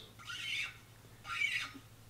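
The screw-in stopper of a Stanley stainless steel thermos squeaking as it is twisted in its neck, two short faint squeaks.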